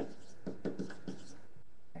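Faint scratching and a few light taps of writing on a surface, in a small quiet room.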